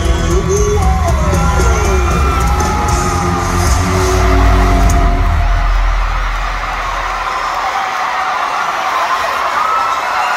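Live band music with heavy bass under a cheering, whooping arena crowd; about six to seven seconds in the bass and band drop away, leaving the crowd screaming and cheering on its own.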